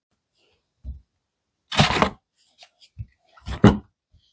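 A few short plastic knocks and scrapes as a Parkside 20 V 2 Ah battery pack is pulled off its charger and handled. The loudest come about two seconds in and just before the end.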